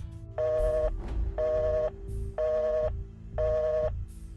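Telephone tone beeping in half-second pulses about once a second, four times, at the even on-off cadence of a busy signal.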